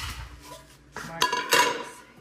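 Stainless steel pot and other metal cookware clanking as it is handled. There is a knock at the start and a louder clatter with a short metallic ring about a second and a half in.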